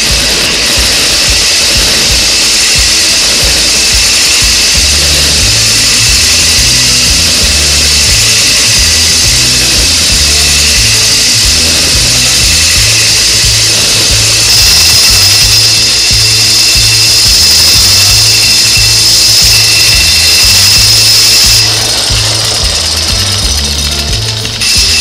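Electric drill with a diamond core bit grinding wet through the thick glass bottom of a demijohn: a steady, high grinding whine that grows louder for several seconds past the middle, then eases. Background music with a bass line plays underneath.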